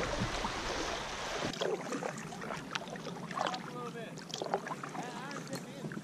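Water and wind noise around a kayak on a lake. About a second and a half in it changes to a quieter bed of faint scattered clicks and short wavering calls.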